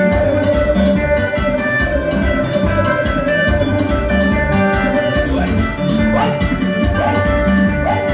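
Live band music played loud, with a steady drum beat under bright, held melodic notes; a few short upward slides in pitch come in the second half.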